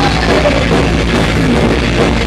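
Live thrash-punk band playing loud, with distorted electric guitar and a pounding drum kit.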